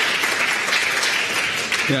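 Audience applauding in a lecture hall, a steady clapping that eases slightly toward the end.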